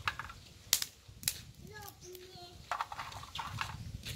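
Dry twigs snapped by hand and dropped into a shallow woven basket: a few sharp cracks and small clatters of wood.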